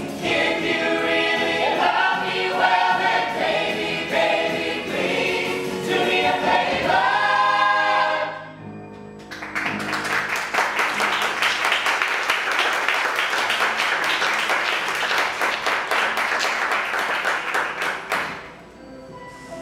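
The musical's ensemble cast sings together in chorus, ending on a held chord about eight seconds in. After a brief pause, the theatre audience applauds.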